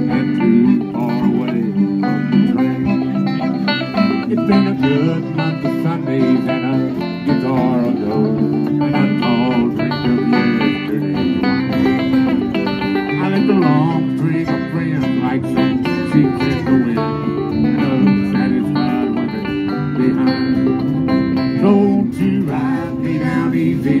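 Live acoustic string band playing a country-bluegrass instrumental break: fiddle melody over strummed guitar and picked banjo, with no singing.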